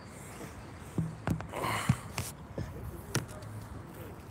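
Handling noise from a phone being moved and repositioned: a handful of sharp knocks and clicks about a second apart, with some rustle in between.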